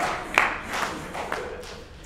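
Audience laughter dying away in a large hall, with a few scattered hand claps in its first second or so.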